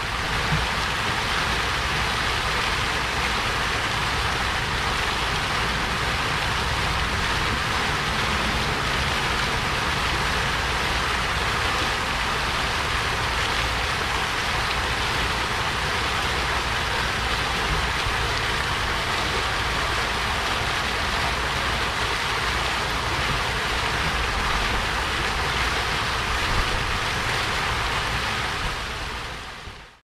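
Water fountain jets splashing down into the pool, a steady rushing splash that fades out at the very end.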